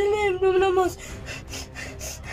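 A boy's voice crying out in one long, drawn-out wail at a steady pitch, breaking off about a second in.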